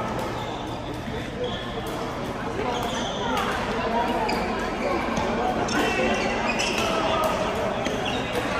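Badminton racquets hitting the shuttlecock in a large, echoing sports hall, a scattering of sharp hits and court thuds from several courts, with players' voices.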